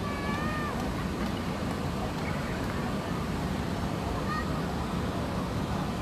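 Outdoor wind rushing and rumbling on a phone microphone, steady throughout. Faint distant voices come through, with a short high call just after the start and another brief one about four seconds in.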